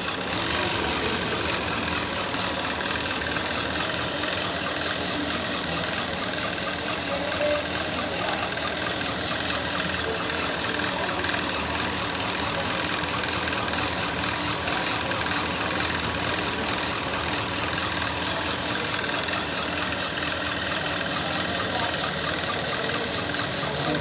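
Industrial overlock (picot) sewing machine running steadily at speed, its motor and needle mechanism giving a continuous whir as it stitches a picot edge along the fabric hem.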